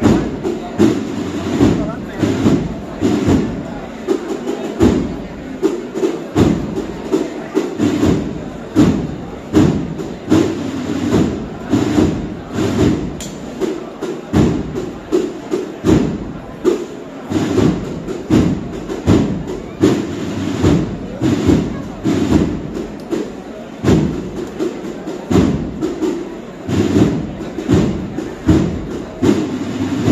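Processional marching band (agrupación musical) playing a march, its drums keeping a steady beat of about two strokes a second.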